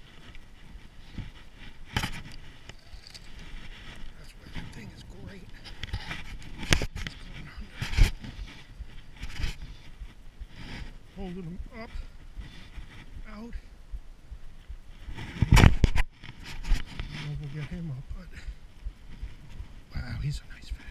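Handling noise: scattered knocks and bumps, the loudest a cluster about three quarters of the way through, with faint voices in the background.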